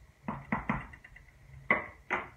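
A wooden spoon knocking against a metal soup pot three quick times, then one louder clack near the end as it is set down on a ceramic spoon rest.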